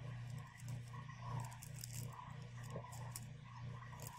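Faint room tone over a call microphone: a steady low hum with a light hiss.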